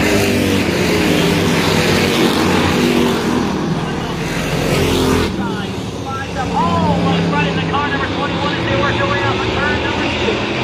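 Street stock race cars' V8 engines running at speed around a paved short oval, a loud engine note with several pitches. The sound changes abruptly about five seconds in.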